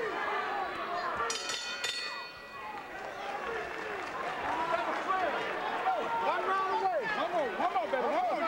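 Boxing ring bell struck a few times in quick succession about a second in, marking the end of the round, over a noisy arena crowd and many voices.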